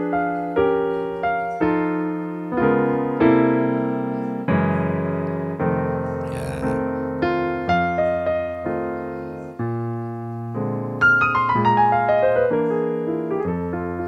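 Digital stage piano playing a solo blues pattern: chords struck about once a second, each ringing and fading, with a quicker run of notes over the last few seconds.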